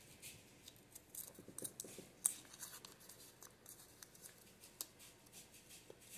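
Faint crinkling and crackling of a small folded paper note being unfolded by hand: a scatter of quick ticks, with a sharper snap about two seconds in.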